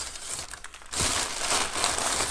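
Packing material crinkling and rustling as hands dig through a shipping box, quieter at first and louder from about a second in.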